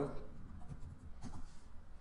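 Faint light clicks of typing on a computer keyboard.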